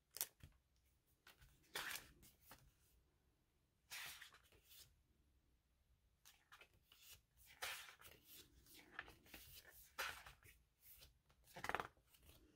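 Paper pages of a sticker book being flipped and handled, giving short, irregular rustles and flicks.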